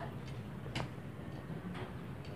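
A few light, brief clicks, the clearest just under a second in, over a steady low background hum.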